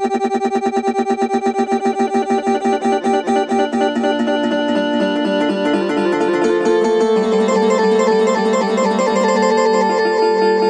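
A granular pad plugin playing a sampled chord, stretched into a sustained texture. For the first four seconds the sound flutters in rapid grains, about seven or eight pulses a second, then smooths into a steady held chord as the grain controls shaping playback are adjusted.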